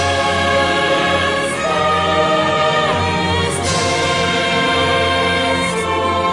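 Choral film music: a choir singing long, held chords, with a brief bright shimmer swelling up a few times.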